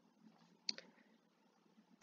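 Near silence: room tone, with a single short click about two-thirds of a second in.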